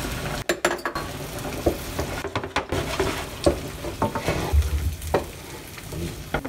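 Beaten eggs sizzling in a nonstick frying pan while a spatula stirs them, with irregular scrapes and knocks of the spatula against the pan.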